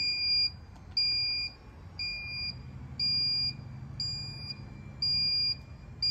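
Remote-controlled folding power wheelchair unfolding itself: a high electronic beeper sounds about once a second, each beep about half a second long, while a low motor hum runs under it for a few seconds in the middle.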